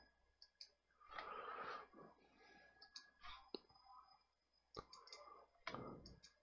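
Faint computer mouse clicks, a handful spaced irregularly, over near silence.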